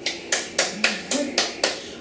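A run of about seven sharp hand claps, evenly spaced at roughly four a second.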